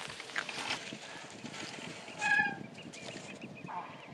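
A short, pitched animal call about two seconds in, and a briefer one near the end, over light clicking steps on wet sand.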